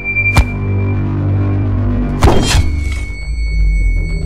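Dramatic film score: a low droning bed with held tones, a sharp hit about half a second in, and a louder noisy swell a little after two seconds.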